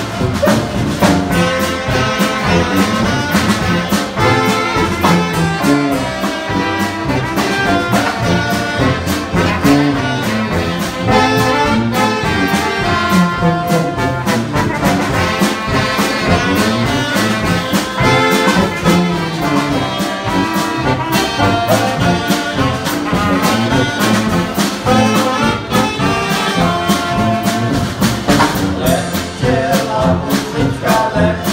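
Live brass band playing: trumpets, saxophones and tuba carrying a tune over a steady drum beat.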